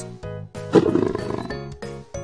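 A leopard's roar, one rough call about a second long starting just under a second in, over cheerful children's background music.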